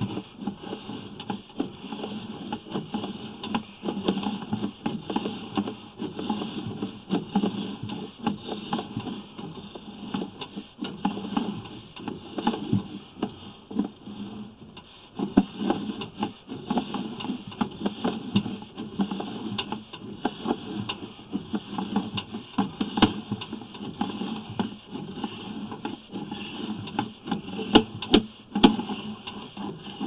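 Sewer inspection camera and its push cable being fed through a clay sewer pipe: continuous irregular rattling, clicking and scraping, with occasional sharper knocks.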